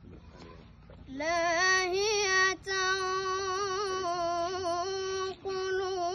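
A boy reciting the Quran in a melodic chanted style, holding long drawn-out notes with small turns of pitch. It begins about a second in, with a brief pause for breath partway through.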